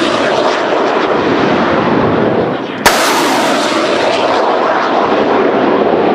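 Truck-mounted multiple rocket launcher firing: a loud, continuous rushing roar, broken by a sharp blast about three seconds in, after which the roar carries on.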